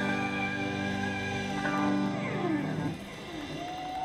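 Live rock band holding a final chord, with notes gliding down in pitch about two seconds in, as at the end of a song. The chord drops away near three seconds, leaving a fainter wavering tone.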